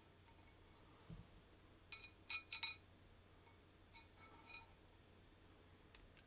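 The top half of a keyboard case being fitted down over the switch plate and PCB, the hard parts clicking and clinking against each other. There is a soft thump about a second in, a quick run of three sharp clicks around two to three seconds in (the loudest), and two lighter clicks near four seconds.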